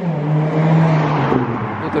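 A motor vehicle passing by on the street: a steady engine hum over tyre noise, dropping slightly in pitch at the start and fading out after about a second.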